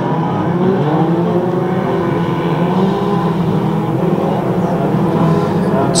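Several banger race car engines running and revving together in a close pack, their pitch wandering up and down.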